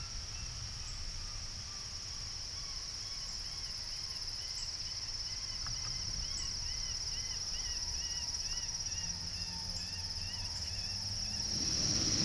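A steady insect chorus, joined a couple of seconds in by a faint, repeated rising-and-falling squeal about twice a second: a rabbit distress call played from a FoxPro X-24 electronic predator caller to draw in coyotes.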